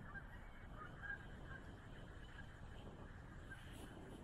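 Faint scattered short calls of distant waterbirds on a lake, several calls in quick succession, over a low steady rumble.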